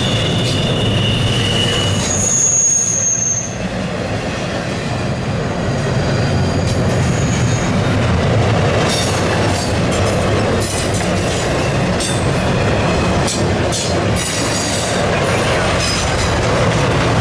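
Intermodal freight cars rolling past at close range: a steady rumble of steel wheels on rail, with brief high-pitched wheel squeals in the first few seconds and a run of clicks from the wheels over rail joints in the second half.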